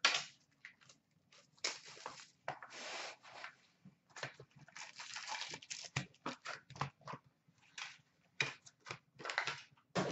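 Rustling, scraping and light knocks of cardboard and wrapped card packs as a hockey card box is opened and its stack of packs is pulled out and set down on the counter, in a series of short irregular bursts.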